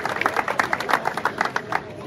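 A crowd applauding with hand claps that thin out and die away near the end.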